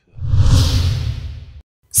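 A whoosh transition sound effect with a deep rumble under a hiss. It swells quickly, fades over about a second and a half, then cuts off abruptly.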